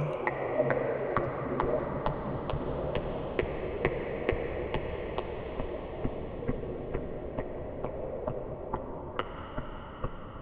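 A clock ticking steadily, about two ticks a second, over a low murky drone with a faint high tone that fades away.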